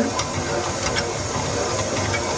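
Stand mixer running steadily, its wire whisk beating boiled chicken breast in the steel bowl to shred it.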